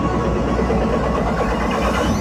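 Live concert music over an arena PA, recorded from the crowd, with a heavy steady bass and a rising high synth tone near the end.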